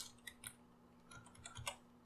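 Faint computer keyboard typing: a few separate key clicks, then a quicker cluster of keystrokes in the second half.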